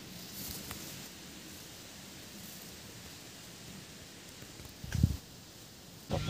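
Faint rustling of cherry-tree leaves and branches as cherries are picked by hand, with one brief low thump about five seconds in.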